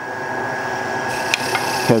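Wood lathe running steadily with the bowl spinning, a constant motor hum with a thin whine over it, and a couple of light clicks after about a second as a turning tool meets the metal tool rest.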